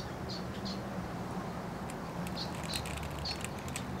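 Small birds chirping in short, scattered calls over the steady low hum of a small electric fan.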